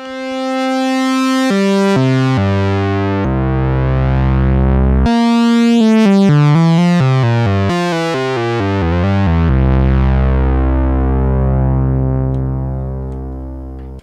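Vintage Minimoog synthesizer played with both oscillators on and a slow attack on the loudness and filter contours. The first note swells in, a few notes change, a quick run of notes follows, then a long low note is held and slowly fades. The pitch holds steady as the notes swell in, showing that the attack no longer affects the tuning.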